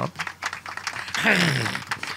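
A person's voice lets out a drawn-out wordless vocal sound about a second in, falling in pitch.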